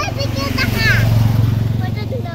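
A motorcycle engine going past, its low drone growing loudest about a second in and then easing off, under a child's high-pitched chatter.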